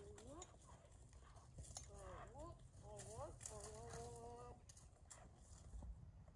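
Faint high-pitched human voice making a few short rising calls and one held note about halfway through, over soft, irregular knocks of a horse's hooves walking on a dirt arena.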